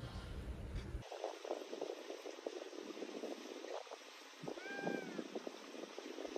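Low wind rumble on the microphone for the first second, then thin outdoor background with light crackling. About halfway through comes one short meow-like animal cry that rises and falls in pitch.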